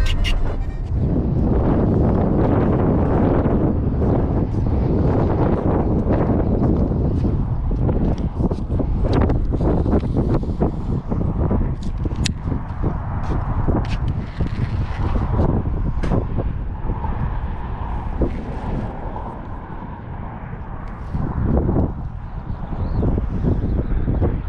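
Wind buffeting the camera microphone: a loud, uneven low rumble, with scattered short clicks along the way.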